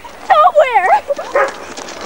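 High-pitched wordless squealing cries, several sliding up and down in pitch in quick succession through the first second, then fainter ones.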